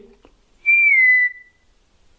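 A person whistles one short note, a little over half a second in, that slides slightly down in pitch: a test whistle for someone to copy back.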